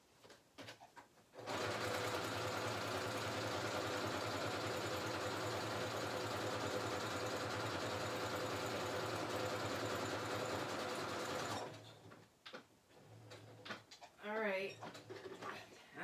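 Sewing machine stitching through paper journal pages, running steadily for about ten seconds and then stopping.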